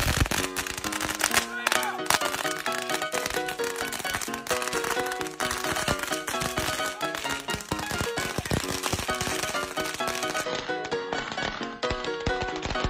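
A string of firecrackers going off in a rapid run of sharp cracks, over background music.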